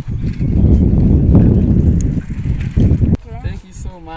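Wind buffeting the microphone with a loud, low rumble that stops abruptly about three seconds in, followed by a brief voice near the end.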